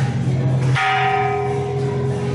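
A bell struck once about three-quarters of a second in, ringing on with a steady tone as its higher overtones fade, over continuing background music.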